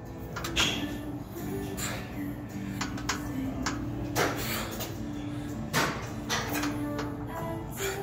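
Music with a held, stepping melody, with a few short, sharp noises scattered irregularly through it.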